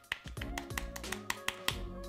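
Background music with steady held notes, over a quick, irregular run of soft clicks from fingers tapping the keys of an Apple Magic Keyboard under a thin gel silicone cover that muffles the keystrokes.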